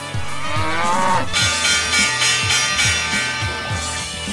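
Intro music with a bull's bellow sound effect over about the first second, its pitch rising and then dropping away. After that the band music carries on, louder and brighter.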